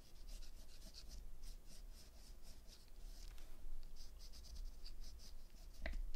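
Tim Holtz watercolor pencil scratching over embossed watercolor paper in short repeated coloring strokes, a few a second.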